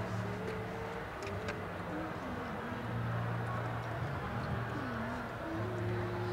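Car running, heard from inside the cabin as a low hum, with a faint wavering tone above it.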